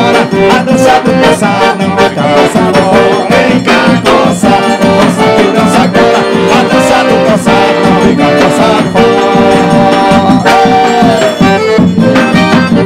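A forró band playing live: piano accordion, acoustic guitar, triangle and zabumba drum, with a steady dance beat under the accordion's melody.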